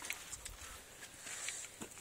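Faint rustling and handling noise with a few light ticks as a handheld camera is moved about over dirt ground.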